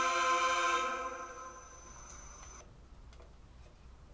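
A choir's recorded final held chord cuts off about a second in and dies away. After it come faint scattered ticks over low room noise.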